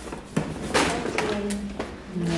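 A couple of light knocks as a cardboard takeaway box is handled and set on a kitchen counter, one about a third of a second in and a lighter one about a second and a half in, under a woman's low, unclear voice.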